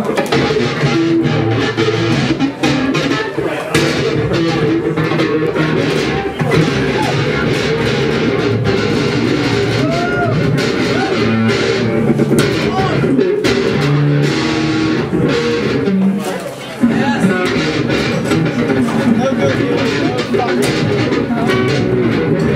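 Solo guitar playing an experimental instrumental piece live, with dense, continuous plucked notes and a brief drop in loudness about three-quarters of the way through.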